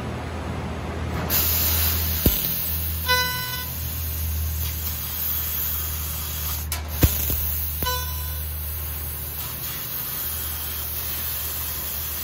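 Fiber-laser cutting head piercing and cutting thick steel plate, its high-frequency final pierce stage: a steady hiss of the cutting jet begins about a second in over a low machine hum, with a few sharp pops and two short beeps.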